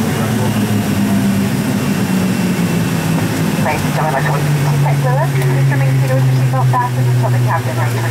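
Airliner's engines heard inside the cabin after touchdown, a low hum falling steadily in pitch as they spool down and the aircraft slows on the runway. A voice starts over the engine noise about halfway through.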